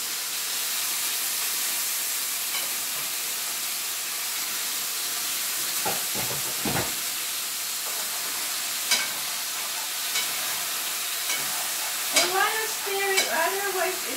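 Beef pieces sizzling steadily as they brown in a frying pan, with a few sharp clicks and scrapes of a utensil stirring them.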